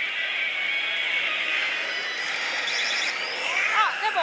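Steady din of a pachislot hall, with the Oshiss! Banchou 3 slot machine's battle-effect sounds over it and a short run of rapid ticks near the end.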